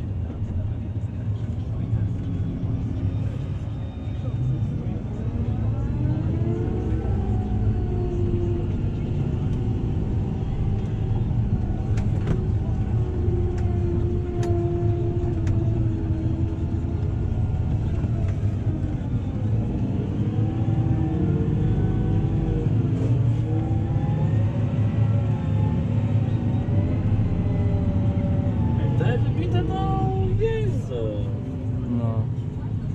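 Tractor engine running steadily, heard from inside the cab while it drives over a silage clamp to pack it. Pitched sounds that rise and fall lie over the low engine rumble from about six seconds in.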